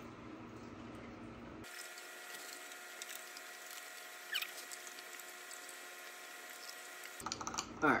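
Quiet room tone with a faint steady whine through most of it and one brief faint chirp about four seconds in.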